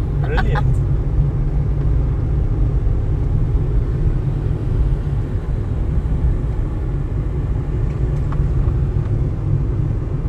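A car driving on a tarred road, heard from inside the cabin: a steady low rumble of road and engine noise.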